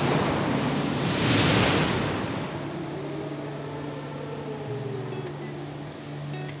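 Rush of a big wave crashing, swelling to its loudest about a second and a half in and then slowly dying away, over a steady low hum.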